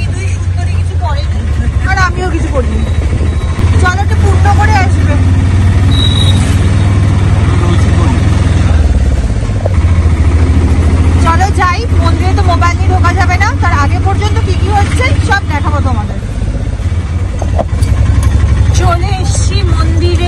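Auto-rickshaw engine running under way, a steady low drone heard from inside the open cabin; its note dips briefly about nine seconds in and then picks up again.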